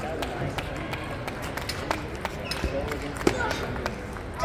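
Table tennis balls clicking off tables and bats at irregular intervals, over background voices.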